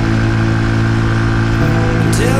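Brixton Cromwell 125 single-cylinder engine running at a steady cruising speed, heard from the rider's seat.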